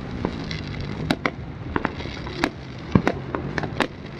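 Fireworks going off: a dense run of irregular pops and crackles, with the loudest bang about three seconds in.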